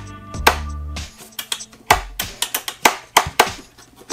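Irregular sharp clicks and knocks from a countertop blender's front-panel controls being pressed over and over, with the motor not starting: the user is not sure how to work the blender.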